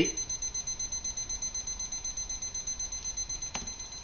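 Digital probe thermometer-timer alarm beeping in a fast, even, high-pitched pulse, signalling that the water has reached its 212°F boiling point. A click sounds just before the beeping stops at the end.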